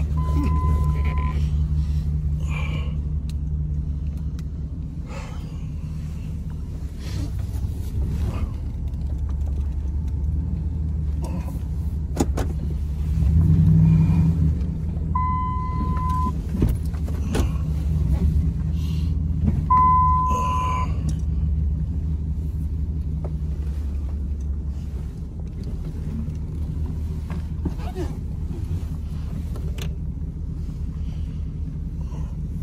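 Pickup truck engine idling steadily, heard from inside the cab. A single-tone electronic beep about a second long sounds three times, near the start and about 15 and 20 seconds in, among scattered clicks and handling noises.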